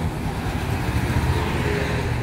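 Steady low rumble of motor traffic going by on the road, a motorcycle among it.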